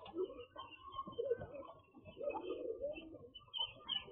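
Domestic pigeons cooing continuously in a crowded coop, with chicks peeping over the top.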